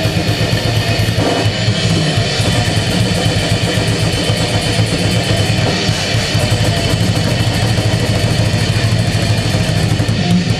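Live heavy metal band playing: heavily distorted electric guitars over fast, dense drumming, loud and unbroken throughout.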